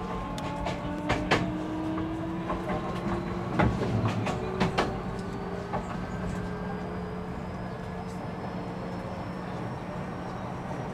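Keio 1000 series electric train heard from inside the car while accelerating. The VVVF inverter and traction motor whine in several tones that slowly rise in pitch, over a steady low hum. Sharp wheel clacks over rail joints come in the first half.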